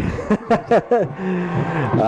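A man's voice: a short laugh and then a long, held "uhh" of hesitation.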